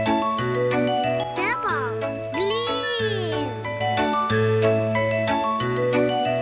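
Upbeat children's background music: a bell-like jingling melody over a steady, repeating bass. A short sliding sound rises and falls in pitch about two to three seconds in.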